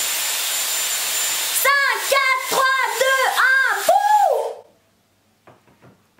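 Dyson Airwrap curling barrel blowing cool air to set a curl: a steady rush of air with a faint high whine, cutting off suddenly about four and a half seconds in.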